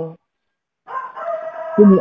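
A rooster crowing once, a held call of about a second starting partway in, with speech coming in over its end.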